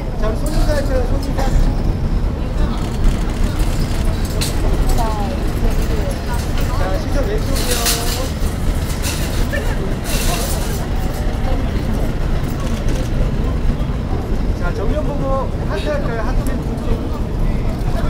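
Outdoor street ambience: a steady low rumble of road traffic, with scattered voices of onlookers calling out and two short hisses partway through.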